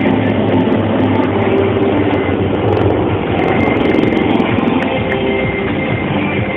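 Helicopters flying past low overhead in a display formation, a steady, loud rotor and turbine noise.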